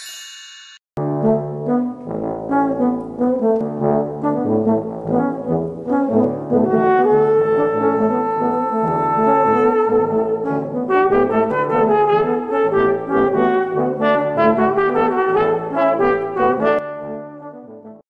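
A short high chime, then a brass ensemble playing a lively tune, trombone and trumpets to the fore. The music grows busier about halfway through and fades out near the end.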